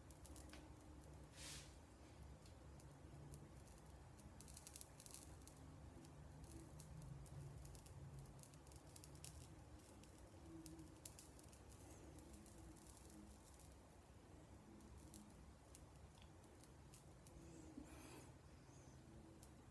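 Near silence, with faint scattered crackling from beard hair singeing under a 3.5 W 445 nm blue laser, over a low steady room hum.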